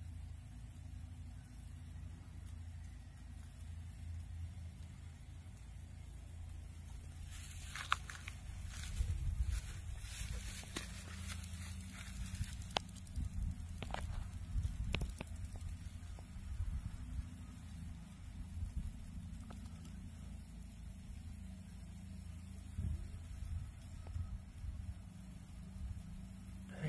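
Faint outdoor background: a steady low rumble, with a stretch of rustling and a few sharp clicks from about 7 to 16 seconds in.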